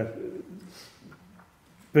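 A man's drawn-out 'uh' trailing off and falling in pitch, then a pause of faint room tone with a soft breath before he starts speaking again.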